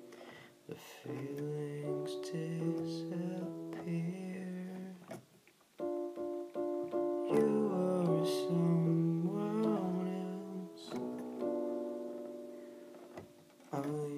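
Synthesizer keyboard playing slow sustained chords with a melody line moving above them. The sound drops away briefly about five seconds in, then the chords come back.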